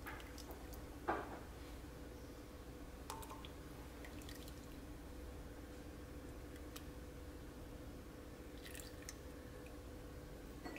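Faint drips and a thin trickle of liquid castile soap poured slowly from a steel measuring cup into a pot of hot water, with a few small ticks over a steady low hum.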